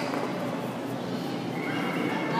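High-pitched human yells over the steady hubbub of a crowd, with a long held shout beginning near the end. These are the kind of shrill shouts heard from fighters and spectators during taekwondo sparring.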